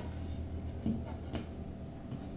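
Light handling of a flat-pack furniture panel as it is lifted and fitted onto plastic dowels: faint rubbing and two soft knocks about a second apart, over a low steady hum.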